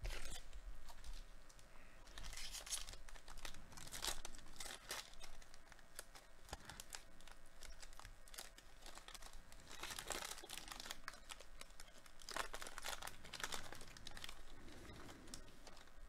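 The crinkly wrapper of a football trading-card pack being torn open and crumpled by hand. It comes in several bouts of tearing and crinkling, with small clicks in between.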